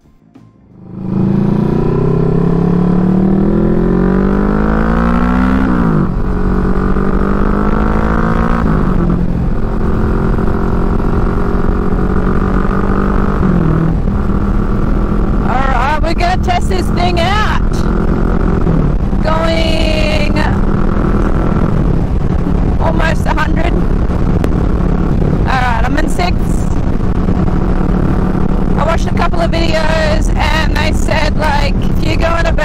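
Kawasaki Vulcan S 650 parallel-twin motorcycle engine pulling away and accelerating, its pitch rising and dropping at two upshifts, then running at a steady engine speed while cruising with road and wind noise.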